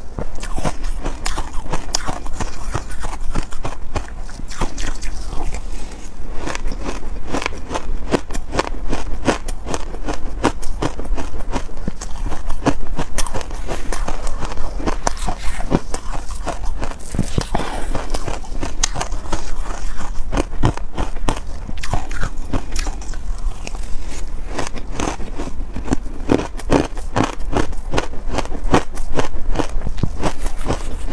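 Close-miked crunching of crumbly purple frozen ice as it is bitten and chewed: a dense, continuous run of crisp cracks and crackles.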